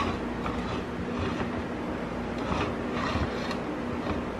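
A steady low background hum with a faint held tone, such as a fan or household appliance makes.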